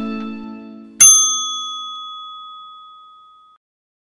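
The last chord of the outro music fades out. About a second in, a single bright bell ding sounds and rings away over two to three seconds: a notification-bell sound effect.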